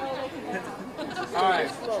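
Crowd chatter: several people talking at once, with one voice standing out about one and a half seconds in.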